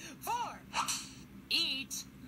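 High-pitched vocal exclamations: two short cries that rise and fall in pitch, with a breathy hiss between them.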